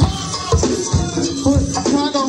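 A live go-go band playing, with a steady drum beat of about two hits a second under hand percussion and sustained melodic lines.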